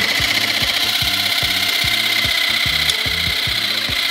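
Small handheld battery-powered pumpkin carving tool running with a steady buzz as it is worked into a pumpkin's rind.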